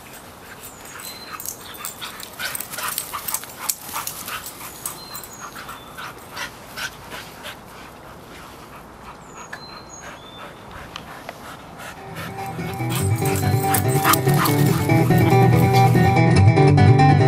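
Two dogs playing on a lawn: quick, irregular sharp taps and scuffles from their romping, with a few short high chirps. Acoustic guitar music fades in about twelve seconds in and grows louder.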